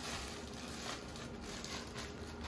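Plastic bread bag crinkling and rustling as it is handled and opened, with small crackles throughout.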